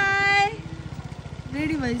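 Small scooter engine running underneath as the scooter rides along, a steady low pulse. A voice's long drawn-out call ends about a quarter of the way in, and a voice comes in again near the end.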